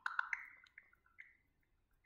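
A run of short, drip-like electronic blips from a phone's speaker, loudest in the first half-second and tapering off by about a second and a half: the ChatGPT voice app's waiting sound while it works on an answer.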